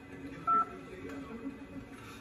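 A single short two-tone beep from a mobile phone about half a second in, as the call is hung up.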